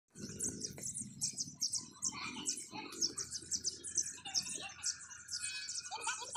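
Birds chirping: a rapid series of short, high-pitched chirps repeated two or three times a second, with a faint low sound beneath in the first half.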